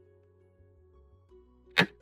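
A single short, sharp sound effect for a piece being moved on an animated xiangqi board, near the end, over soft plucked-string background music.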